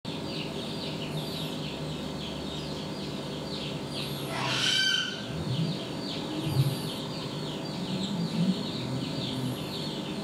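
Birds chirping steadily in the background, with one louder rising call about four and a half seconds in and a brief low dull sound about six and a half seconds in.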